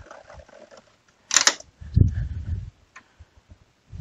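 Plastic handling noise from the grey input-tray cover of an HP Neverstop Laser MFP 1200w printer being pulled off: faint clicks, a sharp clack about a second and a half in, then a duller knock soon after.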